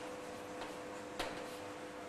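Chalk tapping and scratching on a blackboard as a word is written: a few faint, sharp ticks, over a steady faint hum.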